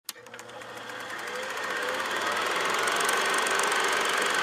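Film projector running: a fast, steady mechanical clatter with a whirring tone, starting with a click and fading in over the first two to three seconds.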